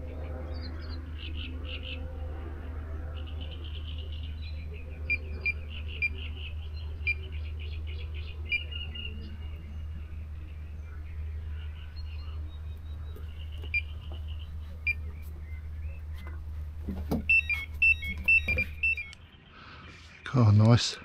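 Electronic carp bite alarm sounding a quick run of beeps near the end, the sign of a fish taking the bait and running, followed by knocks as the rod is picked up. Before that there are a few scattered single bleeps.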